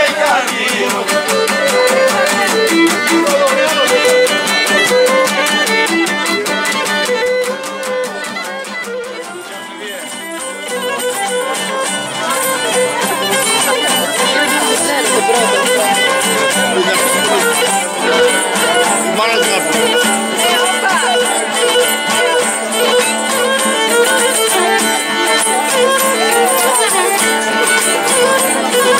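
Live traditional Cretan music: a Cretan lyra bowed over strummed laouta. The music runs on without a break, dipping briefly in loudness about ten seconds in.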